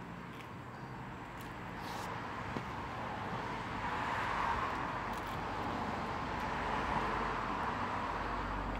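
Steady road traffic noise, an even hiss that grows louder a few seconds in and holds.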